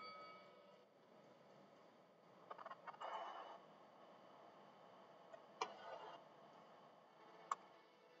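Near silence: faint room tone with a few soft, scattered clicks.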